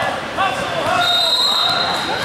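Spectators and players shouting in a gym during a youth basketball game, with a basketball bouncing on the hardwood floor. About halfway through, a steady high-pitched tone sounds for about a second.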